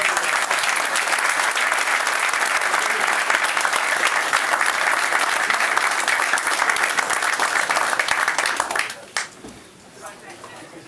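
A roomful of people applauding, dense steady clapping that dies away about nine seconds in.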